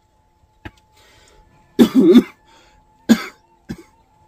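A person coughing hard: a loud double cough about two seconds in, then a shorter cough and a small one near the end.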